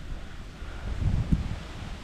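Wind buffeting the microphone: an uneven low rumble that swells and fades in gusts, over a faint outdoor hiss.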